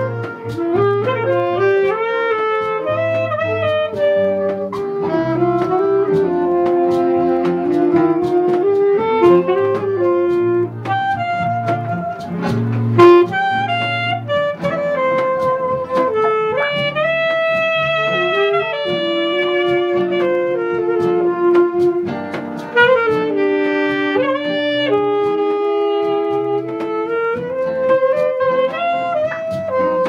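Saxophone playing a melody of held and moving notes over strummed acoustic guitar chords. A brief sharp knock comes about halfway through.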